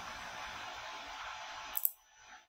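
Steady microphone hiss of a quiet room, with a single sharp computer mouse click near the end.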